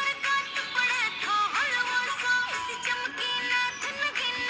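A song playing, with a high singing voice that holds notes and slides between them.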